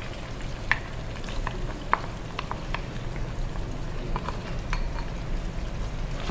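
Chicken pieces frying in hot oil in a nonstick pan, sizzling steadily as a yogurt and spice marinade goes in and is stirred with a wooden spatula, with scattered sharp crackles and ticks.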